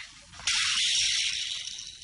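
Sudden loud hiss from the cooking pots on the stove, starting about half a second in and fading away over a little more than a second.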